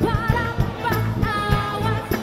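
Live pop music: a woman sings lead with vibrato into a microphone over a full band with drums and guitars.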